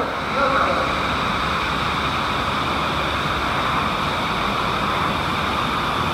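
Steady rushing water noise in an aquarium tank, even and unbroken.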